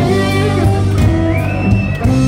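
Live blues-rock jam with several electric guitars played loud through amplifiers, sustained notes over a steady low end. In the second half a high note slides up and holds.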